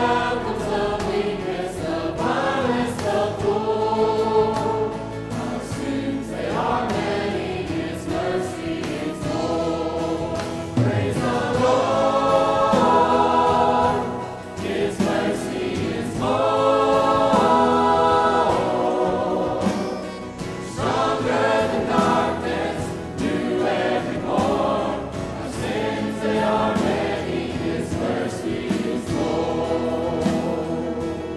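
Church choir and praise team singing a gospel worship song together, with instrumental accompaniment, in long held phrases.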